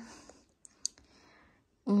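Two short, sharp clicks close together a little under a second in, after a voice trails off.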